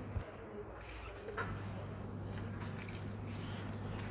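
Faint handling noises as hands move a small metal eye loupe and pick up a paper banknote on a tabletop, with one light click about a second and a half in. A steady low hum runs underneath from then on.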